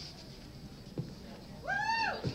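A short high-pitched vocal squeal that rises and then falls, starting near the end, like a cheer or whoop from someone in the audience. Before it there is quiet room sound with a single faint click about a second in.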